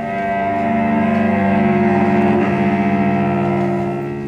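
Cello bowed in a slow, sustained drone, several held notes ringing with rich overtones. It swells louder over the first two seconds and eases off toward the end.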